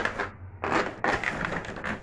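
Plastic parts of a PVC accordion door scraping and clicking as a fitting is worked loose from the door's track, in several rough bursts.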